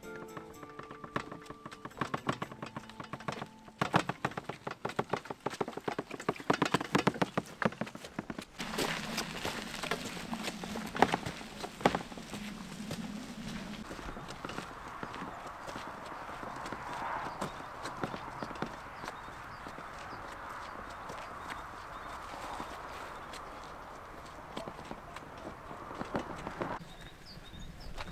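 Wheelbarrow pushed along a dirt track with footsteps: quick rattling clicks for the first eight seconds or so, then a steady rolling rush.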